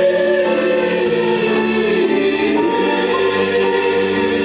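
Indonesian choir singing in harmony, holding long notes that move slowly from one pitch to the next, heard through the stage sound system.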